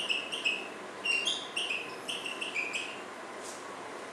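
Dry-erase marker squeaking on a whiteboard as figures are written: a quick run of short, high squeaks, one per pen stroke, with a brief pause about half a second in before a second run that stops around three seconds in.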